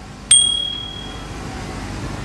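A single bright bell-like ding with a click at its onset, about a third of a second in, ringing out and fading over about a second: the sound effect of a subscribe-button overlay animation, heard over steady filling-station background noise.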